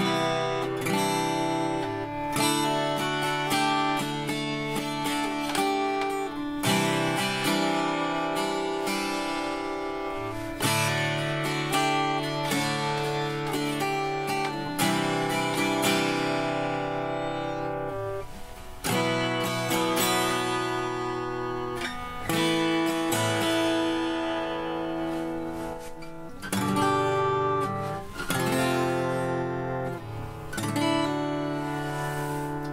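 Martin GPCX2E mahogany acoustic guitar being strummed, its chords ringing and changing, with a couple of short breaks between passages.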